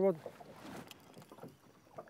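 The word 'forward' ending, then faint lapping of lake water against the hull of a small boat.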